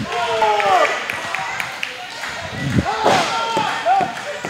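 Voices from a small live wrestling crowd calling out in a hall, in drawn-out shouts that fall in pitch, with a few light knocks in between.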